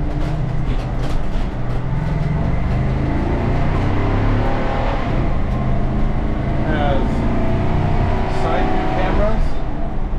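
The big V10 gasoline engine of a Class A motorhome pulling away and accelerating, heard from inside the cab. Its pitch rises in the middle and then holds steady as it cruises.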